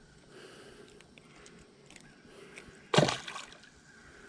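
A small largemouth bass splashing into the water once, about three seconds in, as it is dropped back over the side of the boat. Before that, only faint water lapping and handling noise.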